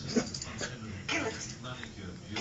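Small dog whimpering briefly, twice.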